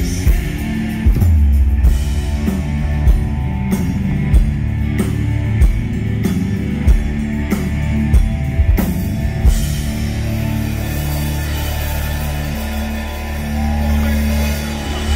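Live rock band playing through a stage PA: drums hitting a steady beat under electric and acoustic guitars and bass, with no vocals. About two-thirds of the way through the drum hits stop and a held chord rings on.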